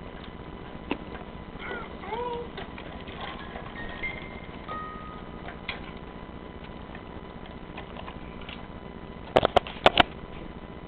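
Toddlers playing with plastic toys: scattered light clicks and taps, a brief high-pitched toddler vocal sound about two seconds in, and a quick cluster of loud close knocks near the end.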